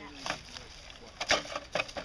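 A scale RC crawler truck tumbling over down a dirt slope, knocking against the ground several times, the loudest knock a little past halfway.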